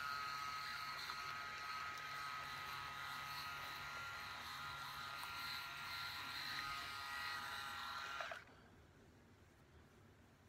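Phisco RMS8112 rotary electric razor, with three rotary shaving heads, running against the cheek and jaw in a steady hum. It cuts off suddenly a little after eight seconds in.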